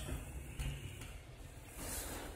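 Low, steady rumble of a car's engine and tyres on a snowy road, heard from inside the cabin while driving.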